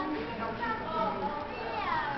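Indistinct chatter of several voices at once, with one high call sliding down in pitch near the end.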